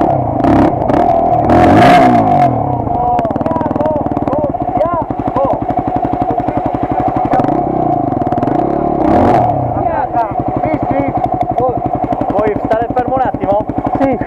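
Dirt-bike engines idling close by with a steady, rapid firing beat, and a couple of short revs, one about two seconds in and another past the middle.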